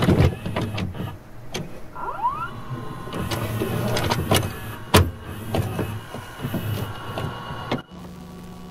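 Irregular knocks and clicks with a short rising squeak, and a heavy thud about five seconds in. The sound cuts off suddenly just before the end.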